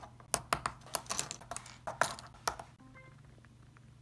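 A quick, irregular run of light clicks and taps for nearly three seconds, then fainter with a couple of short tones.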